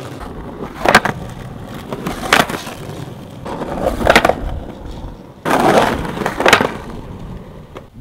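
Skateboard wheels rolling on concrete, broken by about five sharp clacks as the board and wheels strike a curb while being ridden up it.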